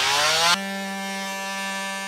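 Oscillating multi-tool cutting into a plastic battery case: a rasping cut with the tool's buzz rising in pitch, then, about half a second in, an even steady buzz as the blade runs free.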